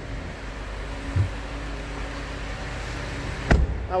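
A 2016 Jeep Grand Cherokee's 3.6-litre Pentastar V6 idling steadily just after a start-up. A short low thump comes about a second in and a louder knock about three and a half seconds in.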